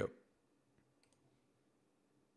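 Near silence with a few faint computer mouse clicks, about a second in, just after a man's voice trails off.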